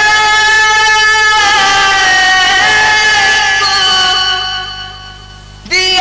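A man singing a naat in Urdu, holding one long, slightly wavering note that fades away about four and a half seconds in. The next sung phrase starts just before the end.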